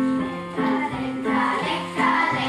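A children's choir singing a polka with piano accompaniment, the voices coming in about half a second in over the piano's alternating bass notes.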